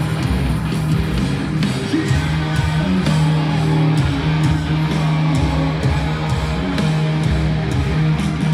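Electric bass guitar played live through a stadium sound system, holding a low note that breaks off and restarts in a rhythm.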